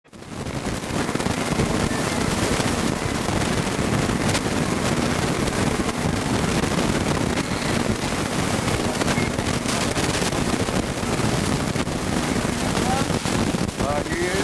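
Indistinct talking over a steady background hubbub in an airport terminal, with frequent crackles through the noise. A voice comes through more clearly near the end.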